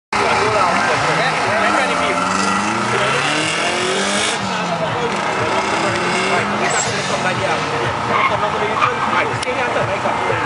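Suzuki Swift GTI's four-cylinder engine revving hard as the car launches from a standing start and accelerates through the gears, its pitch rising and dropping with each shift.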